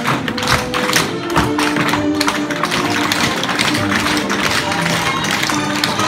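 Many tap shoes striking a wooden floor together in rapid, uneven clusters of clicks as a group dances a tap routine, over recorded music.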